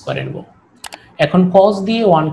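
A man speaking Bengali in a lecture, with a short pause around the middle in which two quick sharp clicks sound just before a second in.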